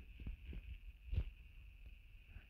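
Quiet background noise with a faint steady high whine and a few soft clicks, the clearest a little after a second in.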